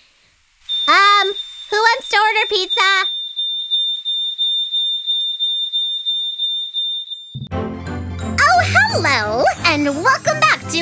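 A cartoon character's wordless groaning vocalizations, over a steady high-pitched electronic tone that holds on alone for several seconds. About seven seconds in, a bright children's show theme with singing starts.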